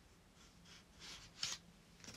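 Faint rustle of an art card being slid out of a steelbook case, a few soft brushes about a second in.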